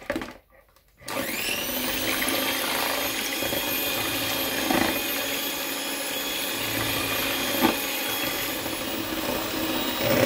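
Electric hand mixer switched on about a second in, its motor spinning up to a steady whine as the twin beaters whisk raw eggs in a bowl. Two light knocks break in partway through.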